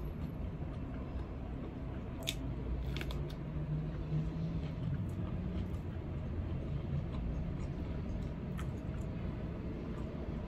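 A person eating rice and grilled pork with his fingers and chewing, with a few short clicks and crunches. A steady low rumble runs under it.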